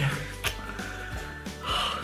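Soft background music with steady held tones, a single click about half a second in, and a short breathy gasp near the end.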